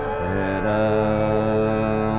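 Hindustani classical vocal music: a male singer's voice slides down, then holds a long steady note from about half a second in, over a continuous drone.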